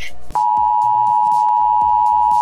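Emergency Broadcast System attention signal: a steady, unbroken two-tone electronic beep that starts about a third of a second in.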